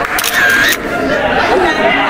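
Many people talking at once in a room. About a quarter second in, a brief, loud, high-pitched sound lasting about half a second cuts through the chatter.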